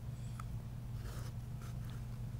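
Toilet bowl after a flush, water settling and refilling with a faint, soft running sound over a steady low hum.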